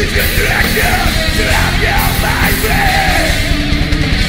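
Heavy metal band playing live, electric guitars and drums together, with the singer yelling the vocals over them.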